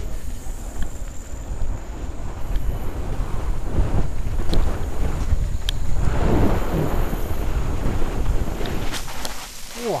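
Mountain bike riding fast down a dirt forest trail: wind buffeting the helmet camera's microphone over the rumble of tyres on dirt, with scattered rattles and clicks from the bike.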